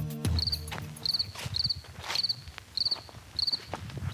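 A cricket chirping at a steady pace, about one and a half chirps a second, each chirp a quick run of pulses. The tail of music cuts off just after the start, and a few soft knocks sound among the chirps.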